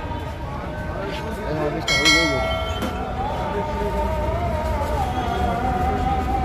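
Busy street ambience: a steady low traffic rumble under voices. A short ringing note sounds about two seconds in, and a wavering, sustained melodic line comes in about a second later.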